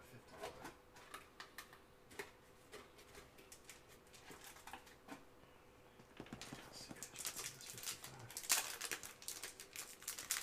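Faint rustling and light clicks from gloved hands handling a trading card. The rustling grows busier and louder from about six seconds in.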